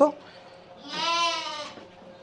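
A sheep bleats once, about a second in, in a single short call.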